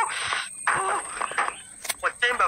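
Brief scraps of a man's voice and breath in a pause between sentences, with a hiss at the start and a single sharp click near the end; a faint steady high whine sits underneath.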